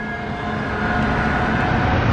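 A motorised three-wheeled passenger tricycle driving close by on a road, with a steady whine of several tones over road noise that grows louder.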